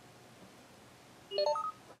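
Faint room tone, then about a second and a quarter in, a quick run of four short electronic beeps, each higher in pitch than the last, over less than half a second.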